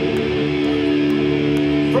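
Distorted electric guitar through a stage amplifier, a chord left ringing steadily without new strums, between songs of a live thrash metal set.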